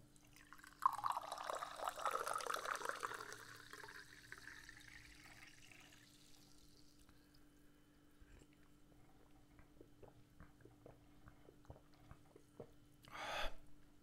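Carbonated mineral water poured from a plastic bottle into a cut-glass tumbler, the pour hissing for a few seconds and the fizz fading out. Then faint small clicks as the glass is drunk from, and a short breathy sound near the end.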